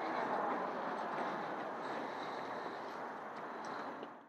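Steady outdoor background noise, an even rush without voices, slowly easing and starting to fade out at the very end.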